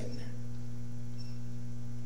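Steady low electrical hum with several evenly spaced overtones, unchanging throughout: mains hum on the microphone's audio line.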